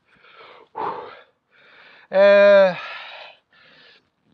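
A man breathing hard in and out through the mouth from the burn of a very hot chili, with three short breaths, then a loud held groan just after two seconds in that trails off into a breathy exhale, and one more breath near the end.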